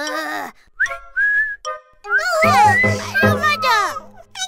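Cartoon character voices making high-pitched wordless exclamations, with a whistle-like tone that glides up and holds about a second in. In the second half, several squeaky voices overlap over a low pulsing beat of background music.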